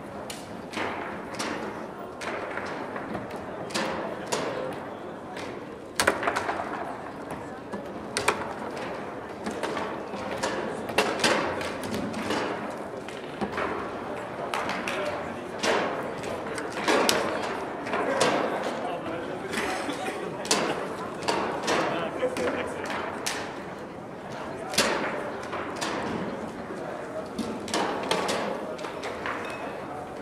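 Foosball table in play: sharp, irregular knocks and clacks of the ball being struck and trapped by the players' figures and of the rods banging, some much louder than others, over background chatter.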